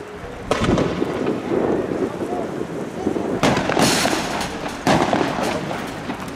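Riot-police gunfire: several sharp bangs, about half a second in, around three and a half seconds and near five seconds, with voices shouting between them.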